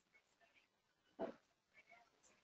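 Near silence, broken just over a second in by one brief, faint sound.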